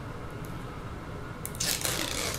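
Protective film being peeled off double-sided adhesive tape on an aluminium paddle-shifter extension: a brief crackly rustle starting about one and a half seconds in, over a low steady background hum.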